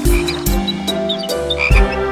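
Cartoon frog croaking sound effects over light instrumental music, with a few low thumps.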